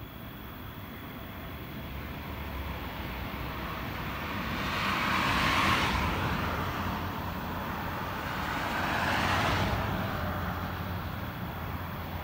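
Two road vehicles passing one after the other, each a swell of tyre and engine noise that rises and fades: the first and louder peaks about halfway through, the second a few seconds later, over a steady low hum.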